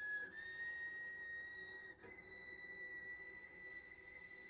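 Cello playing a very soft, high harmonic that steps up in pitch twice, about a third of a second in and about two seconds in.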